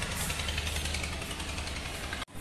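A steady low hum with a hiss over it, unchanging throughout.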